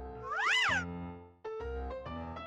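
A cat meows once, the call rising and then falling in pitch, over light background music.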